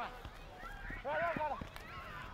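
Voices shouting across a rugby league field, loudest about a second in, with a few thuds of footfalls and bodies on grass.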